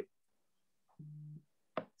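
A short, steady low tone of one flat pitch, lasting under half a second about a second in, followed by a faint click near the end.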